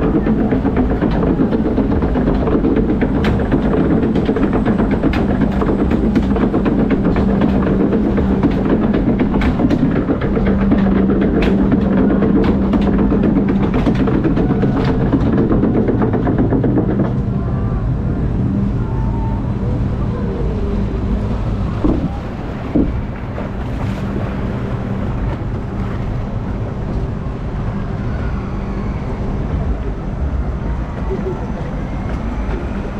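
Log flume lift hill conveyor running, a steady mechanical drone with clicking as it carries the boat up. About 17 seconds in the drone falls away, leaving a quieter wash of water running in the flume trough.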